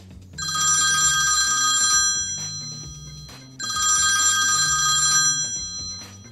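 A telephone ringing twice with a trilling bell tone, each ring about a second and a half long, signalling an incoming call.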